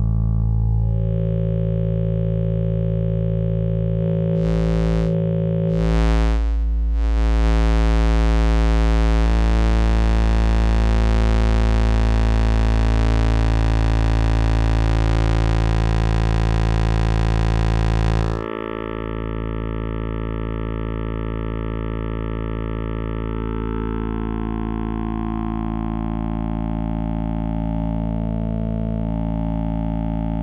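A Synthesis Technology E350 Morphing Terrarium wavetable oscillator holds one steady low note while its morph knobs sweep through the bank B wavetables. The tone changes timbre as it goes: it grows brighter and buzzier over the first seconds, with brief very bright flares around five to seven seconds in. About eighteen seconds in it suddenly turns duller.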